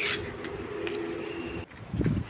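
A bird's low call held for about a second and a half, then breaking off, over faint outdoor background noise.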